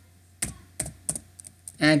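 Typing on a computer keyboard: a few separate key clicks a few tenths of a second apart. A voice starts a word near the end.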